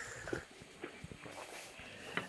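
A man taking a sip from a small glass: faint sipping and swallowing with a few small scattered clicks.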